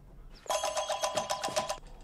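A telephone bell ringing: one rapid, trilling ring that starts about half a second in and lasts just over a second.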